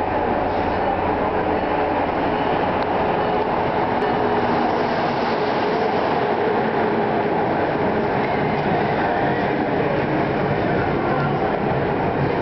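Amtrak HHP-8 electric locomotive and its passenger cars arriving along a station platform, a steady rumble of wheels on rails as the train passes close by.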